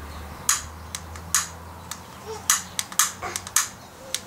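Sharp, irregular clicks, about a dozen, from a long-nosed utility lighter being clicked at a small pile of shotshell powder to light it, over a faint low hum.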